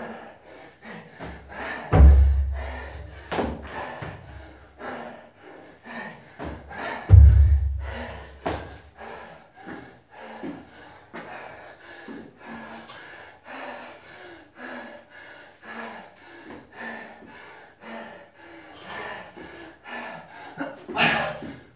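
Music playing throughout, with two heavy thuds about five seconds apart early on: feet landing on a wooden plyo box during burpee box jumps.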